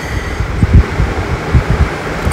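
Low background rumble with a few soft, irregular thumps and a faint steady high tone.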